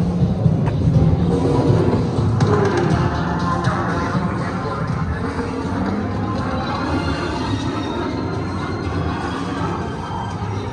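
Themed ride-queue music and sound effects playing over outdoor loudspeakers, with held low tones throughout. A rushing swell of noise joins in about two seconds in and fades over the next few seconds.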